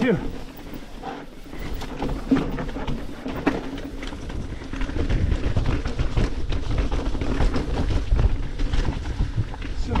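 Commencal Meta HT hardtail mountain bike rattling and clattering as it rides fast over rocks and roots. Tyre and wind rumble on the chest-mounted camera grow heavier about halfway through.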